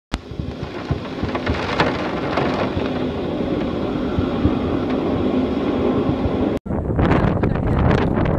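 Typhoon wind and rain lashing a building: a loud, steady rushing with deep rumbling gusts and many small spatters of rain. It breaks off abruptly about six and a half seconds in and resumes as another gusting storm recording.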